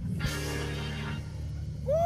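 Church music: a held low chord that carries through, opened by a crash that fades over about a second, with a man's shout of "Woo!" near the end.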